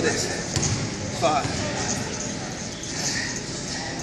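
Busy weight-room background: a steady haze of gym noise with a brief snatch of voice about a second in and a single sharp click a little before that.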